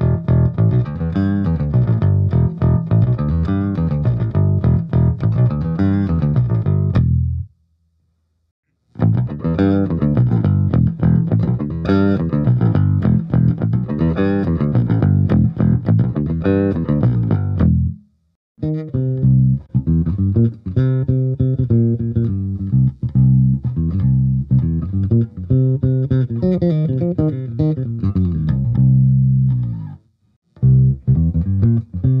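MTD Kingston Saratoga electric bass, a Jazz-style bass with two single-coil pickups, played with a pick through a bass amp. It goes from the neck pickup alone to the bridge pickup alone, in three takes parted by two short silences.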